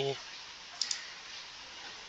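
A single computer mouse click a little under a second in, over faint room hiss.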